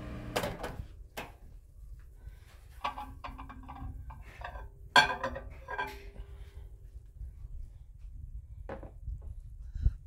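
Microwave door being opened and a glass measuring cup knocked and clinked as it is handled: scattered clicks and knocks, the sharpest about five seconds in, with short ringing tones from the glass.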